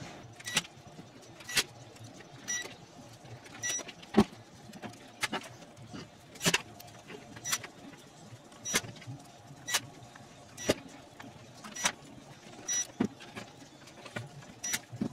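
Sharp clicks and light taps about once a second from small hand tools and parts being handled on a workbench: a screwdriver, screws and a plastic-framed circuit board being put back together. Some of the clicks carry a brief ringing tone.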